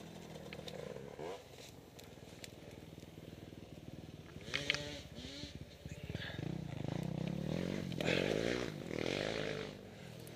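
An engine revving in several bursts, its pitch climbing and falling each time, loudest in a long run near the end.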